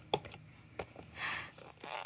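A hand handling a cardboard takeaway box: a few light taps and clicks and one brief rustle as the cardboard is pressed and slid.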